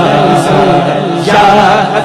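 Male naat reciter singing a Punjabi naat in long, wavering, drawn-out melodic lines, over a steady low drone.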